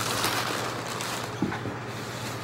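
Brown kraft packing paper crumpling and rustling as it is pulled out of a shipping box by hand, with a soft knock about halfway through.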